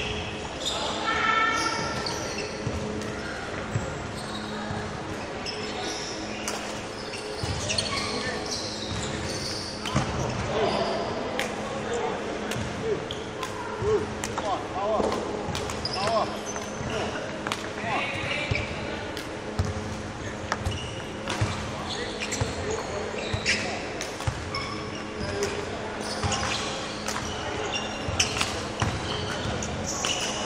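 Court shoes thudding and squeaking on a sports-hall floor as a badminton player runs a footwork drill, the steps echoing in the hall. A steady low hum runs underneath.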